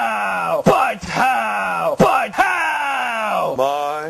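A voice giving a run of short yelling cries, about two a second, each one sliding down in pitch, going over into a steadier held tone near the end.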